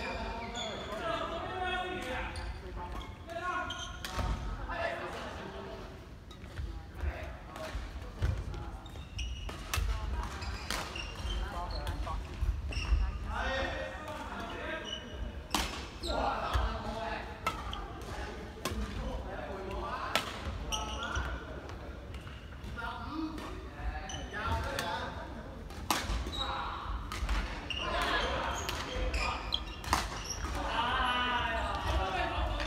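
Badminton rally: irregular sharp smacks of rackets hitting the shuttlecock, echoing in a large sports hall, over people talking.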